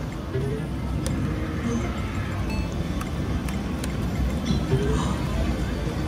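Casino floor ambience: background music and the murmur of voices, with a few faint short electronic tones and clicks from the gaming machines.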